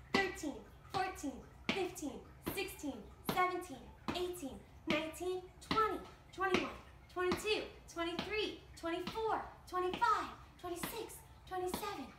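A woman counting aloud in a steady rhythm toward thirty, about one number a second.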